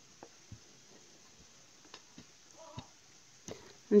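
Faint, irregular light knocks of a wooden rolling pin working pizza dough on a floured worktop, about seven over four seconds against a very quiet room.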